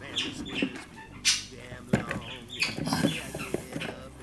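Birds chirping and calling in short repeated notes, with a brief rustle about a second in.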